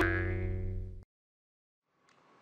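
Intro logo sound effect: a pitched musical hit rings on as a steady chord-like tone and cuts off suddenly about a second in.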